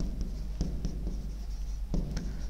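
Stylus writing on the glass screen of an interactive touchscreen board: faint scratches and a few light taps.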